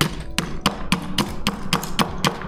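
A long bar tool jabbed down into a cocktail shaker to break up a large ice cube: a quick series of sharp knocks, about four a second.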